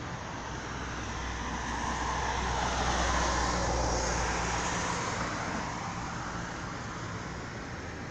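A road vehicle passing by: its noise swells to a peak about three to four seconds in, then fades away.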